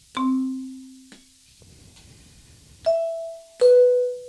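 Sampled vibraphone from a GigKAT 2 sound module, played from a MalletKAT controller's pads: three separate mallet notes, a low one that rings for about a second, then a higher note and a middle note near the end.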